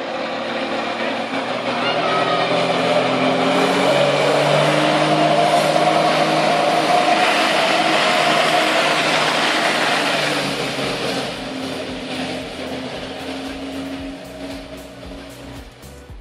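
Jet ski engine running hard to drive a flyboard, with the rushing spray of the water jets; it gets louder about two seconds in, holds, then eases off after about ten seconds.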